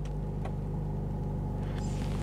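Mercedes-AMG A45 S's 2.0-litre turbocharged four-cylinder idling steadily and low-pitched, heard from inside the cabin, with the AMG exhaust button just pressed to open up the exhaust sound. The engine is not yet warm.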